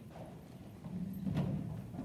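Children's footsteps knocking and thudding on a hollow wooden stage and risers, growing busier from about a second in, with one sharper knock near the middle.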